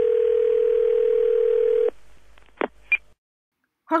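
Telephone line tone held steady for about two seconds, then a click and a short high beep as the call connects to the automated answering service.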